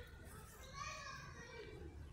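A faint child's voice calling out, one drawn-out call starting about half a second in and lasting about a second.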